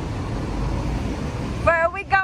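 Steady noise of road traffic on a busy city street, with a person's voice starting near the end.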